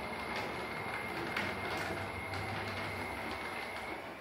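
Pepper humanoid robot's electric drive motors whining as it moves on its wheeled base. The whine holds one high pitch over a low hum and fades out at the end.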